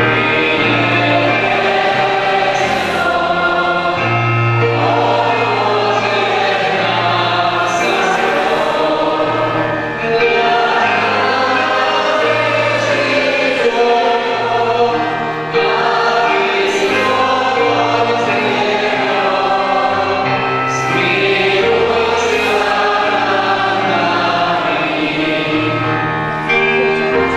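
A church hymn sung by several voices, with a man leading at the microphone, accompanied by two violins and an electronic keyboard holding low bass notes.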